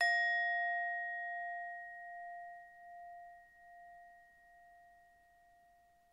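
A single struck bell note, ringing out and fading slowly with a gentle wavering over about six seconds.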